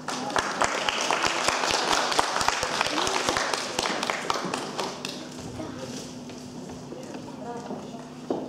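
Audience applauding, a dense patter of many hands clapping that fades away after about five seconds.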